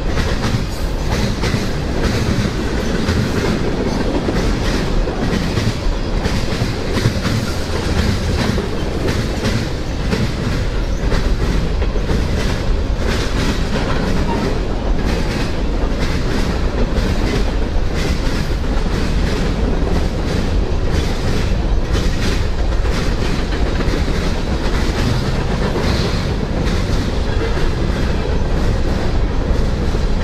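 CSX mixed freight train of tank cars, open-top hoppers and boxcars rolling past at close range: a steady rumble of steel wheels on rail, with continual rapid clicking as the cars go by.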